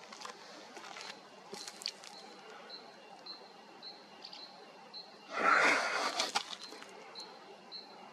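A short, high chirp repeated evenly about twice a second, with a few light clicks near the start and a loud noisy rustle-like burst a little past halfway, the loudest sound here.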